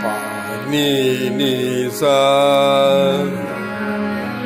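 Harmoniums sounding steady notes while a voice sings sargam in raga Bhimpalasi: a short phrase, then a long held "sa" about two seconds in.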